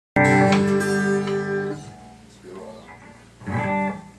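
Guitars sounding a chord that rings out loud for about a second and a half and then dies away, with a second, shorter chord near the end.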